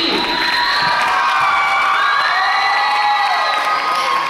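Audience of teenagers cheering and screaming, many high voices overlapping in long shrieks.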